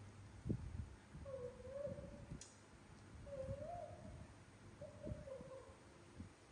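Young macaque giving three short, wavering, whimpering coo calls. A dull knock comes about half a second in, with a few softer knocks after it.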